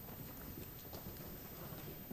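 Faint, scattered footsteps and small knocks of people moving on a wooden stage floor, over the low hum of a large hall.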